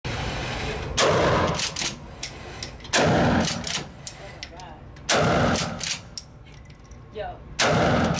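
Mossberg 590S Shockwave 12-gauge pump-action shotgun fired four times, about two seconds apart. Each blast rings on in the concrete range and is followed by sharp clacks as the slide is pumped to chamber the next shell.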